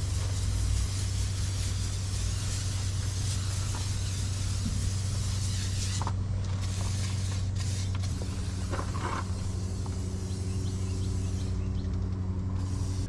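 Aerosol can of silicone slide-out lubricant spraying through its straw in long hisses, with two short breaks midway, stopping shortly before the end. A steady low hum runs underneath.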